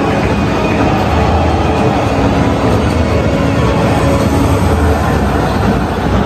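Music over a stadium's public-address system, mixed with loud, steady crowd noise from a packed stand.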